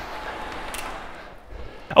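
Electric floor fan blowing a steady rush of air, dying away about a second and a half in as it is switched off.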